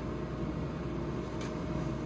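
Steady low machine hum with a thin steady tone, from the refrigerated medication cabinet's cooling unit, and a light click about one and a half seconds in.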